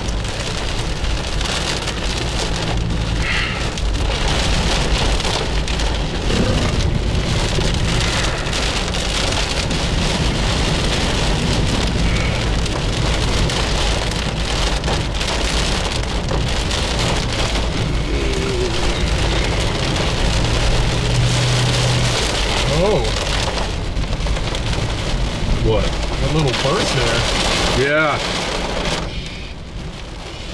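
Heavy rain drumming on a car's roof and windshield, heard inside the moving car's cabin, with a steady low road and engine rumble underneath. The downpour eases slightly about a second before the end.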